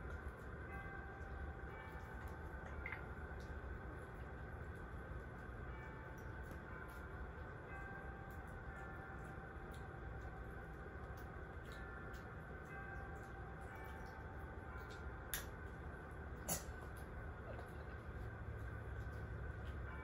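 Steady low room hum with scattered faint clicks and two sharper ones about three-quarters of the way through: a small old dog slowly chewing a hard treat, which the owner thinks is too hard for his eleven-year-old teeth.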